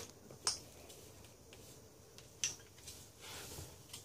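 Faint clicks from a caulk gun as its trigger is squeezed to run Liquid Nails construction adhesive along the groove of a tongue-and-groove plywood sheet; two sharp clicks about two seconds apart.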